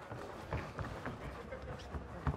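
Boxers' feet scuffing and stepping on the ring canvas, with scattered sharp thuds from punches and footfalls during a close-range exchange.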